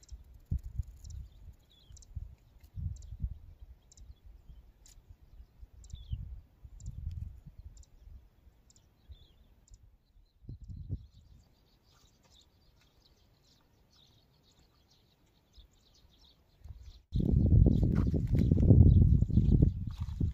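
Small birds chirping faintly in short calls over intermittent low rumbles of wind on the microphone. About seventeen seconds in, loud, continuous wind buffeting on the microphone starts abruptly.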